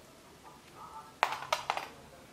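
Small metal bandage clips clinking: three sharp clicks in quick succession a little over a second in.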